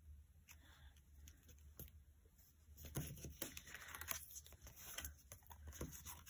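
Faint rustling and light taps of paper card stock being pressed and handled, sparse at first and busier from about halfway through.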